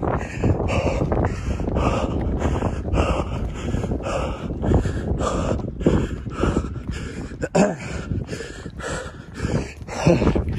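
A man panting hard in a quick, even rhythm of breaths while running uphill.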